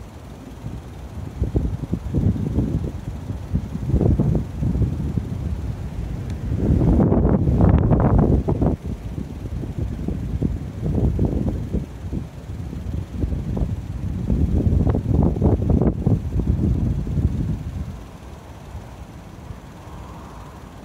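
Wind buffeting the microphone in irregular gusts, a low rumbling noise that surges and dies back several times, strongest about seven to nine seconds in and dropping away near the end.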